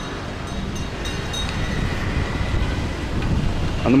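Wind buffeting the camera's microphone: a steady low rumble and rush of noise.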